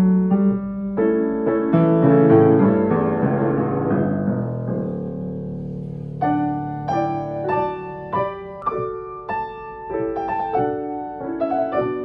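A 1936 Blüthner Style IVa baby grand piano being played, its hammers freshly evened out for tone. Held chords and a flowing passage ring and fade through the first half, then crisper, separately struck notes and chords follow from about six seconds in; the tone is mellow.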